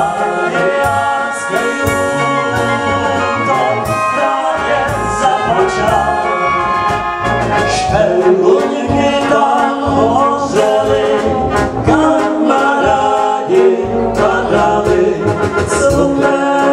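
A Czech brass band playing live, with men singing into microphones over trumpets and trombones.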